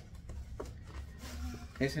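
Soft rustling and handling of a paper gift bag and its contents as a child pulls a gift out of it. A voice starts near the end.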